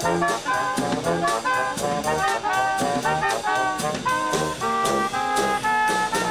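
Upbeat brass music with drums: horns play a quick melody over a steady beat.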